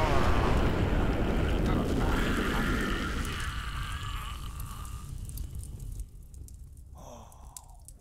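The rumbling tail of a heavy crash or explosion sound effect, dying away over about five seconds. A short breathy vocal sound, like a gasp or sigh, follows near the end.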